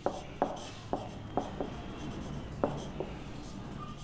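A marker writing on a whiteboard: a string of short, irregular taps and strokes as characters are written.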